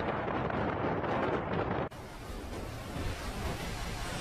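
Storm wind and breaking waves around a ship at sea, a steady rush of noise. A little under two seconds in it cuts off suddenly to a quieter stretch of wind and sea.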